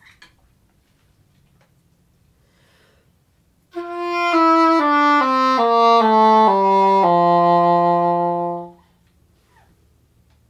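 English horn playing a descending one-octave scale, fingered C down to C, which sounds a fifth lower as F down to F. Eight notes step down starting about four seconds in, the last low note held for nearly two seconds.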